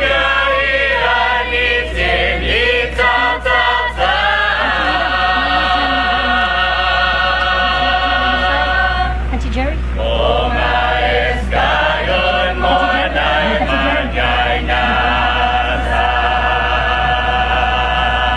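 A group of voices chanting together in long held, wavering notes, with a short break about halfway through.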